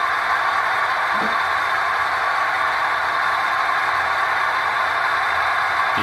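HO scale model diesel locomotive running slowly across a turnout's powered frog, giving a steady, even mechanical sound that does not falter, so the frog is feeding it power.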